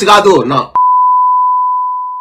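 A man's speech is cut off about three-quarters of a second in by a broadcast censor bleep, a single steady beep held unbroken to mask abusive words.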